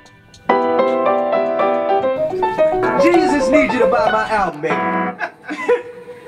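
Keyboard piano chords start about half a second in, played as repeated held chords. About two seconds in, a voice joins in over them with a melody that slides up and down, and the chords stop near the end.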